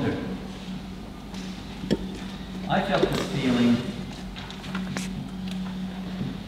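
A brief, indistinct voice speaking about three seconds in, over a steady low hum, with one sharp click about two seconds in.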